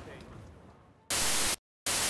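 Two bursts of TV-style white-noise static, each about half a second long with a short silent gap between, used as a glitch transition sound effect. They follow faint background ambience that fades out over the first second.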